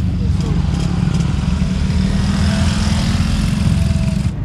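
Small motorcycle engine running along a dirt road close by, over a steady low rumble.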